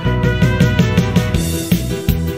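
Karaoke instrumental backing track (MR) of a Korean pop-rock song, with no lead vocal, playing with a steady beat. It is the lead-in just before the first sung line.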